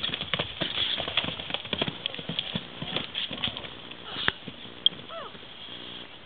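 A horse's hooves pounding hard and irregularly on arena sand as the horse bucks and throws its rider. The thuds die away after about three and a half seconds, followed by two separate sharp knocks.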